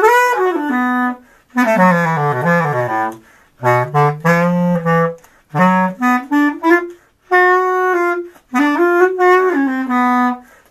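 Unaccompanied bass clarinet improvising a jazz blues: single-line phrases of one to two seconds with short breath pauses between them, some lines sliding down into the instrument's low register.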